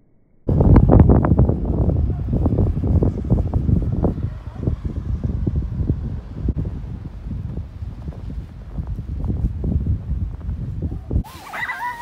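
Loud rumbling with irregular thumps and crackles from wind and handling on a phone's microphone held close to a padded jacket. It starts suddenly about half a second in and stops abruptly near the end.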